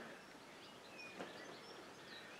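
Quiet room tone with faint bird chirps, short and scattered, and a soft tap a little after a second in.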